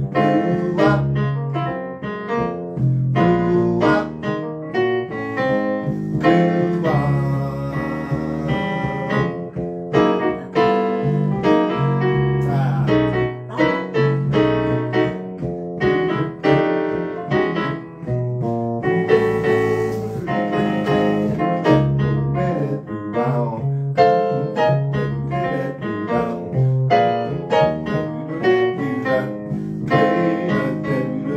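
Piano being played: a busy passage of quick notes and chords.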